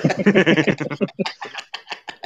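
Several people laughing hard together, the laughter dying away into a few scattered bursts after about a second.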